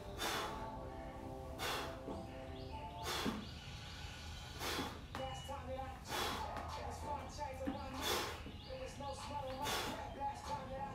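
A man exhaling hard about every second and a half, rhythmic breaths of effort through a set of single-leg calf raises, over quiet background music.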